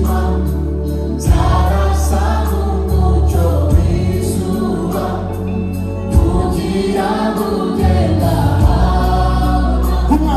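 Live gospel song sung in Kinyarwanda by a lead singer and choir, backed by a band with a strong bass line and drum hits.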